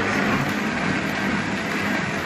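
Countertop blender motor running steadily at speed, puréeing a thick load of fruit, spinach and tea into a smoothie.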